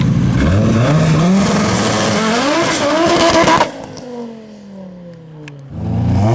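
Car engine revving hard, its pitch climbing in steps for about three and a half seconds, then backing off suddenly, the pitch falling away over the next two seconds before the engine picks up again near the end.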